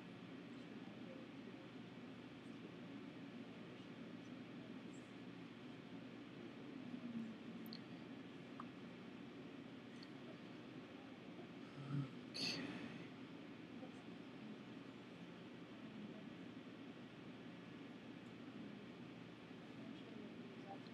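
Quiet room tone with a steady low hum. About twelve seconds in there is a short thump, then a brief rustling noise.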